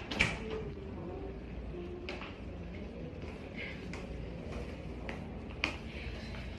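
Low room noise with a few soft, sharp clicks and knocks, the sharpest near the end, and a faint voice in the background early on.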